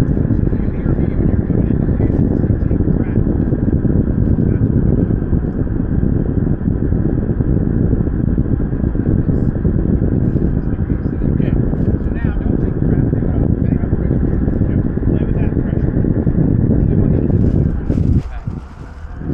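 Loud, steady wind rushing and buffeting over the microphone of a camera flying with a towed tandem paraglider.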